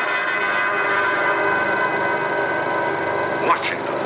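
Orchestral film score from a 16mm print's soundtrack holding a full sustained chord, with a sudden loud accent about three and a half seconds in.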